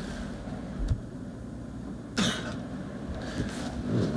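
A single short cough a little past halfway through, over the low background noise of a meeting room, with a soft low thump about a second in.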